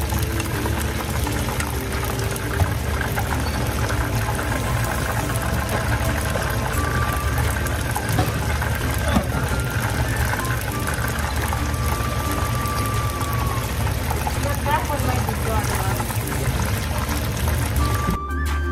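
Battered fish deep-frying in a pan of hot oil: a steady, dense crackling sizzle.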